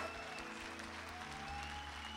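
Live band playing held chords, with the bass note changing about a second in, under audience applause.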